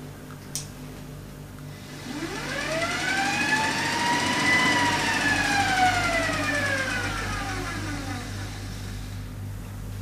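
Kostov DC electric motor on a bench test, spun up by a Cougar motor controller and running with no load: a whine rises in pitch from about two seconds in, peaks midway and falls away again as the throttle is eased back. A steady low hum runs underneath, with a single click near the start.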